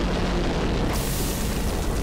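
Cartoon rocket-engine exhaust blast: a continuous rumbling rush of flame that turns hissier about a second in, with music underneath.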